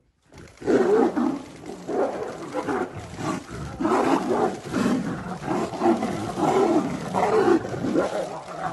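Tigers fighting, roaring repeatedly in loud, rough bursts that begin about half a second in and keep coming in waves.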